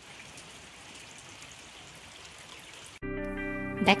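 Steady rain falling on a tiled terrace, an even hiss. About three seconds in, background music comes in over it.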